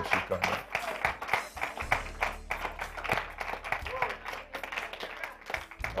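Congregation clapping a quick steady beat along with church music, with scattered voices calling out.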